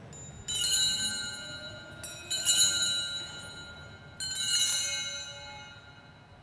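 Altar bells rung three times at the elevation of the chalice during the consecration at Mass, each ring a bright, high chime that fades away before the next.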